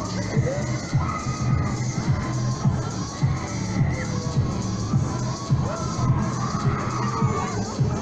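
Riders on a spinning fairground thrill ride shouting and screaming over loud funfair music with a steady thumping beat.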